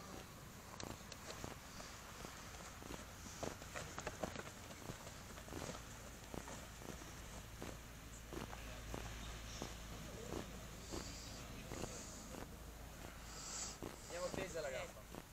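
Faint outdoor sounds of a group of players moving about on a grass pitch: scattered soft thuds and scuffs at an uneven pace over a low rumble.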